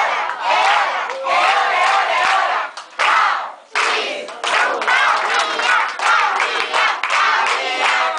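A group of children and adults singing and shouting a birthday song together while clapping in rhythm, with a brief pause about three and a half seconds in.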